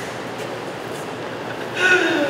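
A steady rushing noise with no distinct events, and a short voice sound near the end.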